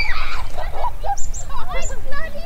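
Wind buffeting the microphone with a heavy low rumble, and a string of short, high-pitched cries over it.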